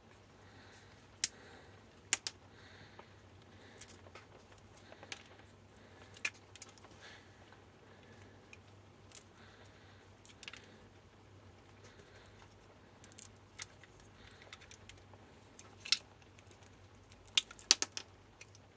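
Irregular small clicks and ticks of plastic and metal as a hot-glued inline blade-fuse holder is pried open with pliers, with a few sharper snaps and a cluster of them near the end.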